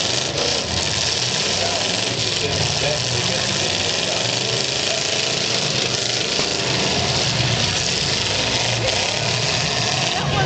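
Several demolition derby cars' engines running together in a loud, steady rumble, with indistinct voices from the grandstand crowd mixed in.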